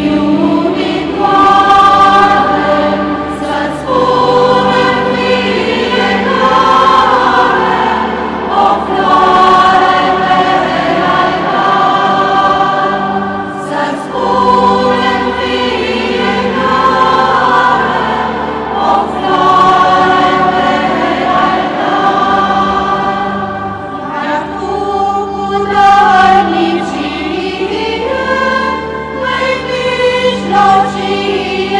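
Church choir singing a hymn in long held phrases over steady low notes.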